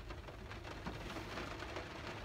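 Heavy rain falling on a car, heard from inside the cabin as a steady, even hiss.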